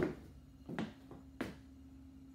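Three brief knocks or handling bumps spread over two seconds, with a faint steady hum underneath.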